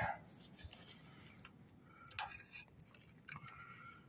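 Faint handling noise: a few light clicks and clinks, spaced out, about two seconds in and again near the end.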